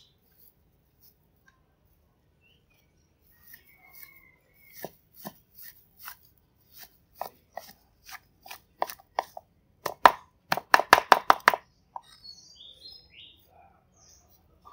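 Cleaver chopping shredded vegetarian mock spare rib on a round cutting board: scattered single strikes at first, then a quick run of chops about five or six a second near the end.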